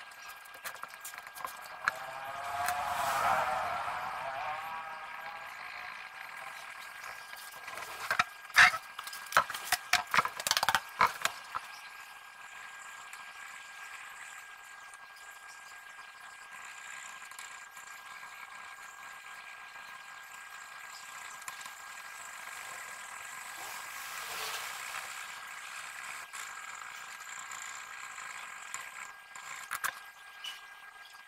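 Faint steady hiss with a thin steady high tone. About three seconds in a wavering pitched sound swells and fades; around eight to eleven seconds in comes a run of sharp clicks and knocks from a clipboard and its metal clip being handled.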